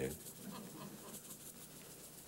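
Salt shaken from a plastic shaker onto a casserole of vegetables, a faint, quick patter of small ticks.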